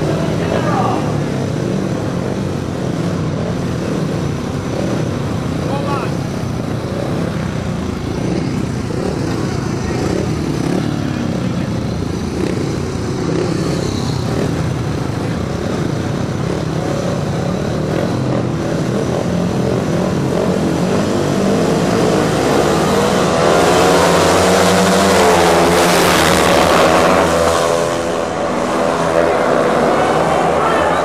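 Several speedway motorcycles' single-cylinder engines running at the start line, then revving hard together about two-thirds of the way in as the race gets under way. Their pitch rises and wavers, and it is loudest in the last several seconds.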